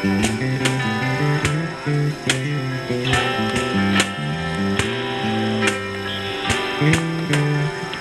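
Live acoustic music from a small ensemble: plucked guitar over a moving bass line, with sharp accents on a steady beat.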